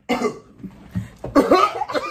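A person coughing: a short cough right at the start and a louder, longer cough in the second half.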